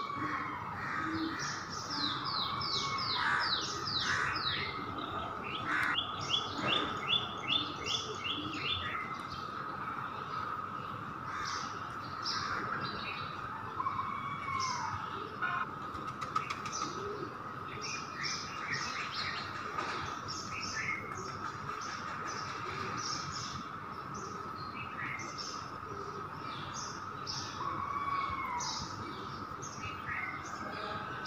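Small birds chirping throughout. In the first nine seconds there are two quick runs of short repeated notes, then scattered single chirps, over a steady faint tone.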